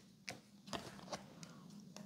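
A handful of faint, irregular light clicks and taps of cardboard game tokens and cards being handled on the table.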